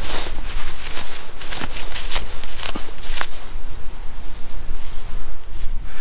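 Wind rumbling on the microphone, with several short rustles and scrapes from gloved hands and a jacket sleeve as a soil-covered find is handled and rubbed.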